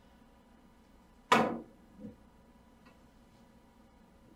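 A cue striking the cue ball on a three-cushion billiard table: one sharp, loud click about a second in, followed under a second later by a softer knock as the ball travels.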